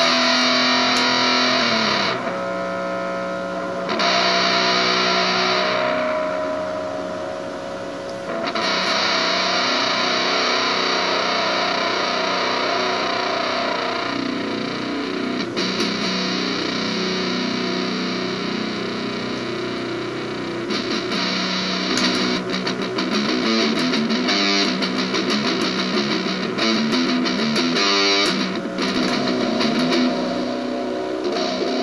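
Electric guitar, an Eastwood Sidejack, played with heavy distortion from a BOSS MT-2 Metal Zone pedal through a Vox AC15 valve amp. A couple of held, ringing notes in the first eight seconds give way to denser, louder distorted playing.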